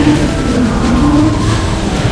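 Dense electronic noise music: a loud, steady wash of noise with low wavering tones that glide up and down.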